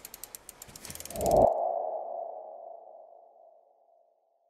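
Logo-reveal sound effect: a run of quick ticks that come faster and swell in loudness, giving way about 1.5 s in to a single ringing tone that fades out over about two seconds.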